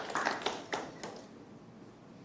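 Audience applause dying away, with a few last separate claps in about the first second before it fades to quiet.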